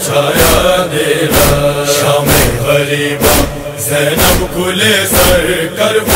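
Noha lament: voices chanting a long, drawn-out melodic line without instruments, over steady strikes about once a second, the chest-beating (matam) that keeps time in a noha.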